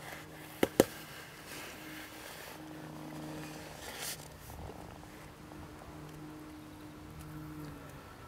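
Faint, steady low hum of a lake aerator's motor, with a second, higher tone above it. Two sharp clicks come under a second in, and a short rustling burst around four seconds.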